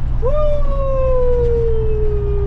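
A man's drawn-out "woo" holler, one long call that jumps up and then slides slowly down in pitch for over two seconds, over the steady low drone of a semi truck's diesel engine heard from inside the cab.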